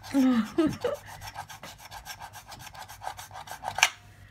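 A coin scratching the coating off a paper scratch-off lottery ticket in quick, even, repeated strokes, with one sharp click near the end.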